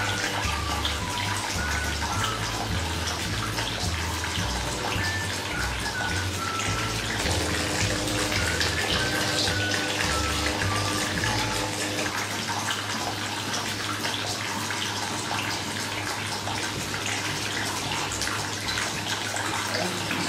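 Small tabletop water fountain running: thin sheets of water spilling off the rim of a saucer and splashing steadily into a basin of water below. Soft background music plays under the water and stops about halfway through.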